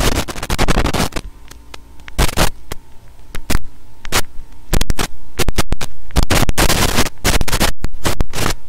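Microphone distortion and interference: a steady mains hum under crackling bursts of static. The crackles grow denser and louder from about halfway through.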